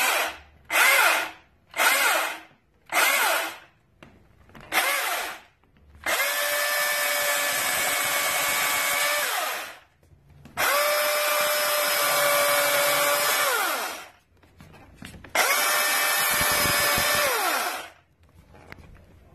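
Milwaukee M18 Fuel brushless cordless chainsaw triggered in five quick half-second bursts, each winding down with a falling whine. Then it runs three times for about three to four seconds each at a steady pitch, winding down each time the trigger is released.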